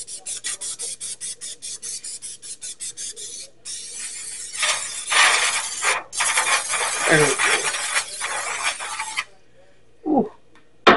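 Aerosol spray can spraying: a fast run of short spurts, about five a second, for the first three and a half seconds, then two longer continuous sprays of about two and three seconds. The hiss cuts off sharply each time the nozzle is released.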